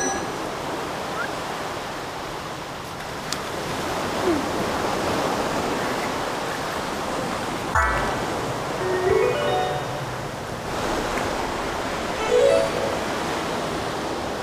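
A steady wash of surf noise. A sharp hit comes about halfway through, followed by short rising sound effects added in the edit, once just after the hit and again near the end.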